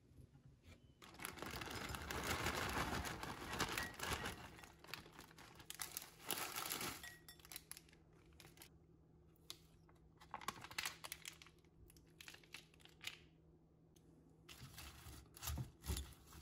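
Packaging crinkling and tearing for a few seconds, loudest early on, then quieter scattered rustles and light clicks. Near the end, salad is tossed with tongs in a glass bowl.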